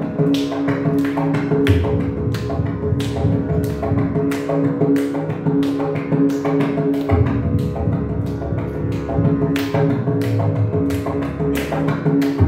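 Mridangam playing solo: sharp, crisp strokes, about two to three a second, mixed with phrases of deep booming bass-head strokes, over a steady drone.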